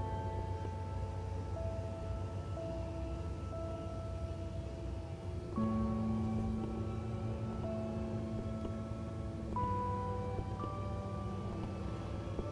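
Slow, calm instrumental background music with long held notes, changing to new notes about halfway through and again near the end.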